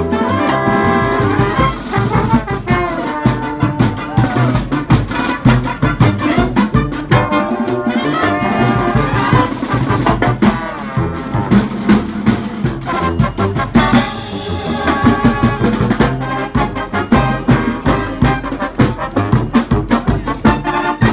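Brass band playing live: trombones, trumpets, saxophones and sousaphones over a steady marching drum beat.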